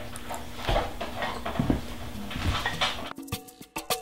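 Spatula scraping and stirring a thick sour-cream-and-mustard marinade in a glass bowl: a few soft, separate wet scrapes. The sound cuts off a little after three seconds in.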